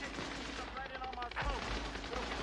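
Gunfire with voices over it, a few sharp shots, the loudest about one and a half seconds in.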